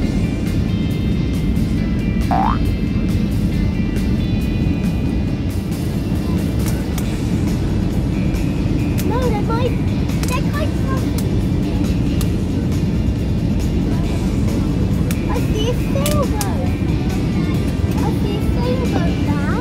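Steady airliner cabin noise from the engines and rushing air, loud and even throughout, with brief snatches of passengers' voices now and then.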